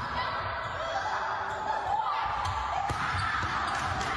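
A volleyball struck by hands and hitting the floor a few times in a sports hall, over the steady calls and chatter of the players.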